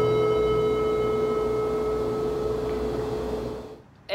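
A strummed acoustic guitar chord, the last chord of a song, ringing on and slowly dying away, then fading out just before the end.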